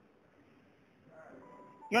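A pause in a man's preaching: near silence, then faint sustained musical tones come in about a second in, and his voice starts again just before the end.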